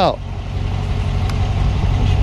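Parked police car's engine idling, a steady low rumble.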